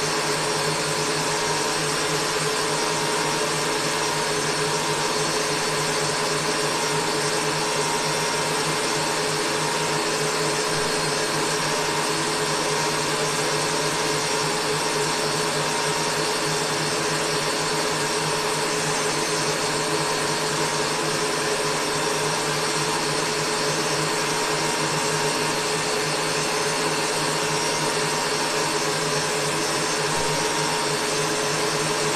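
Electric stand mixer running steadily at one constant speed, with a whisk whipping egg whites (albumin) for marshmallow.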